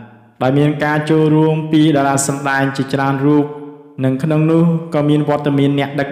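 Speech only: a man's voice narrating in Khmer in an even, chant-like tone, with short pauses about half a second in and just before four seconds.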